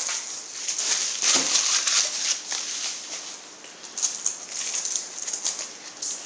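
Clear plastic wrapping crinkling and rustling as it is pulled off small bike lights by hand, with irregular sharp crackles.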